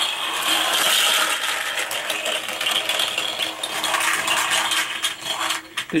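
Nine Cars Micro Drifters die-cast cars rolling on their ball bearings down a plastic track: a dense, steady rattling clatter of many small cars that thins out near the end as they pile into each other in a traffic jam.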